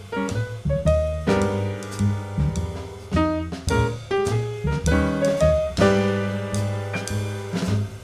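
Jazz piano trio playing live: upright piano chords over a walking double bass, with a drum kit played with sticks and frequent cymbal and drum strikes.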